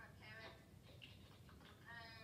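Faint high-pitched voice talking in short phrases over a low steady room hum.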